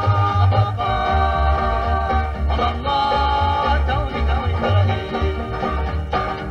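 Background music: held melody notes over a bass line that moves in a steady beat.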